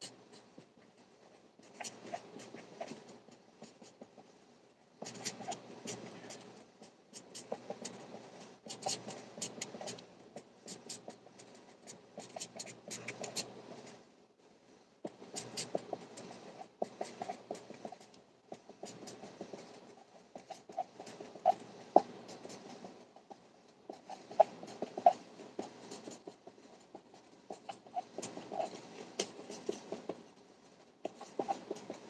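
Pen scratching on paper, in runs of a few seconds with short pauses between: writing on raffle tickets.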